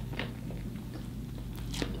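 Biting into and chewing a fish sandwich, with a few short crisp crunches, one just after the start and two close together near the end.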